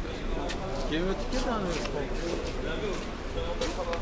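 Background voices of several people talking at a distance, with a few faint clicks.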